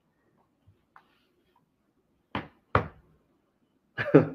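Two sharp knocks about half a second apart, a little past the middle.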